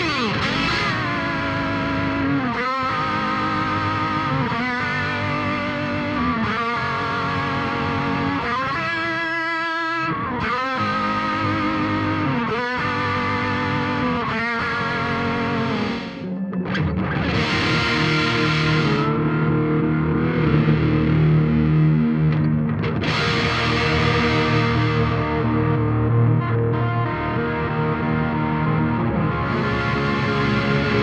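Electric guitar played through an Eventide Rose delay pedal in the effects loop of a Mesa Boogie tube amp. The first half is rhythmic chords with wavering, modulated echoes. After a brief dip about halfway, a heavier distorted passage follows, with sustained low notes.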